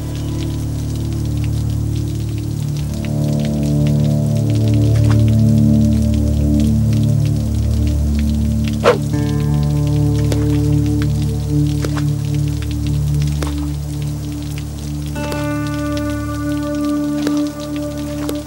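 Film background score: low sustained synth drones and held chords, with higher held notes joining about three seconds in and again near the end. Sparse short ticks like drips sound over it, with one sharper hit about nine seconds in.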